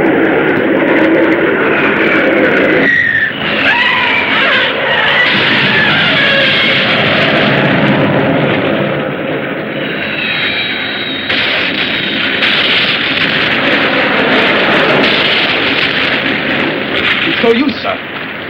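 Dense, continuous film battle effects: jet aircraft noise and rumbling explosions, with high gliding tones about three to five seconds in and again near ten seconds.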